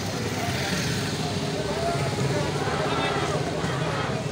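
Street traffic noise: the steady low rumble of vehicle engines, motorcycles among them, running at low speed, mixed with the voices of a crowd.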